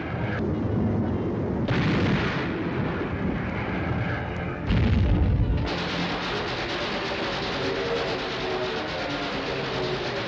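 Orchestral newsreel music played over a battle soundtrack of explosions and gunfire, with a heavier boom about five seconds in.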